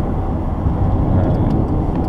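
Steady in-cabin road noise of a 2014 Dodge Challenger SXT cruising at highway speed: tyre rumble from its 235/55R18 tyres over the hum of its 3.6-litre V6.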